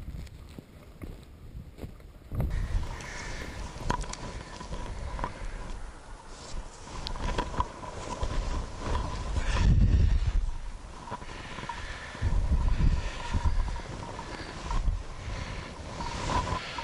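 Wind buffeting a body-mounted camera's microphone in gusts, with footsteps and rustling as a hunter walks through snow and dry weeds.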